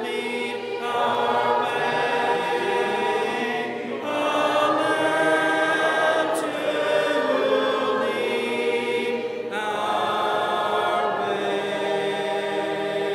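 A group of voices singing a hymn a cappella, unaccompanied, in long sustained phrases with short breaks between them.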